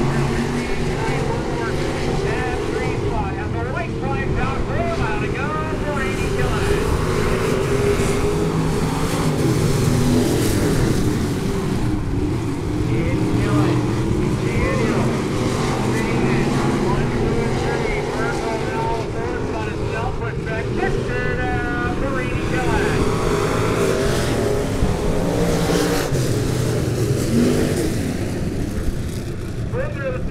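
Several IMCA stock car engines running steadily at low revs as the cars roll slowly around the dirt track, with voices faintly over them.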